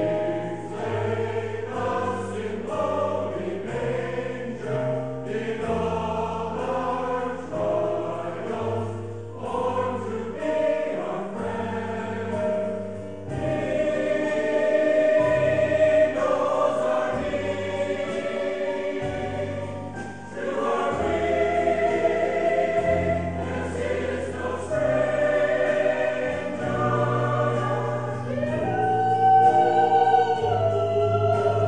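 Mixed-voice community choir of men and women singing in parts, sustained notes moving chord to chord; it grows fuller and louder about a third of the way in.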